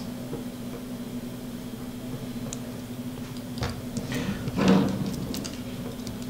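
A few faint clicks and light taps as a small nut is threaded by hand onto an antenna connector on a carbon-fibre drone frame, over a steady low hum.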